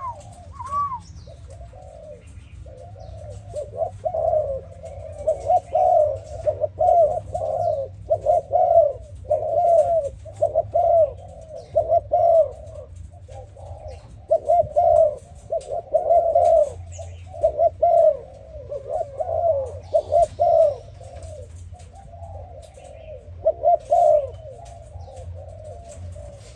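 Malaysian-line spotted dove cooing: repeated low coos in several runs, with brief pauses between them.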